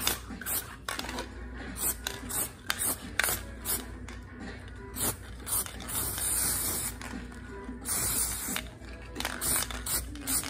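Aerosol spray paint can handled and shaken, its mixing ball rattling in a run of sharp clicks. Two short hisses of spray come about six and eight seconds in.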